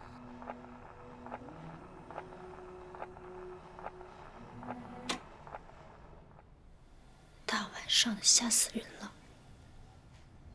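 A record playing on a vertical turntable: slow held notes that step up in pitch, over a soft regular tick. About five seconds in it stops with a sharp click as the turntable's knob is turned. Near the end comes a short breathy whisper.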